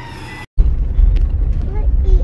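Car driving on a rough dirt road, heard from inside the cabin: a loud, steady low rumble of engine and tyres that starts after a brief dropout about half a second in.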